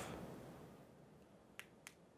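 Near silence, then two short clicks about a quarter second apart near the end: the push-button on-off switch of a strap-on LED hand light being pressed, a switch that is not reliably turning the light on and off.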